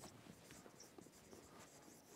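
Faint strokes of a felt-tip marker writing on a whiteboard: a scatter of light scratches and taps.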